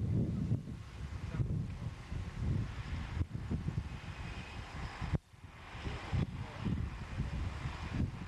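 Gusty wind buffeting the camcorder microphone, a rough low rumble that rises and falls, with a click and a short lull a little past halfway.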